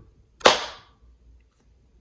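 A single sharp pop about half a second in, dying away over about half a second, marking the vanishing of the books in a mock magic trick.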